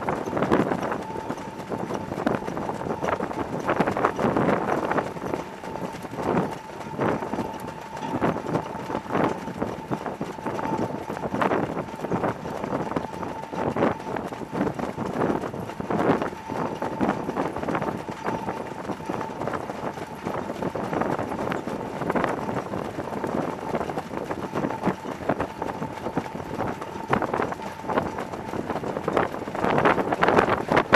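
Hoofbeats of several Standardbred harness horses trotting and pacing on a dirt track: a dense, uneven patter of hoof strikes over a steady rush of running noise. A faint, thin, steady tone sounds underneath for most of the time.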